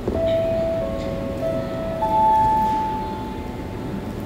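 Airport public-address chime: three overlapping ringing notes. The second is lower than the first, and the third, about two seconds in, is higher and the loudest. It sounds over the hum of a large terminal hall and announces that a PA announcement is about to follow.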